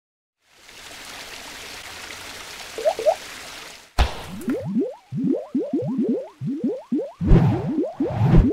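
Sound effects for an animated logo intro: a steady rising hiss for a few seconds with two quick blips, then a sharp hit about four seconds in. A fast run of short upward-sliding boing-like blips follows, with low thumps joining near the end.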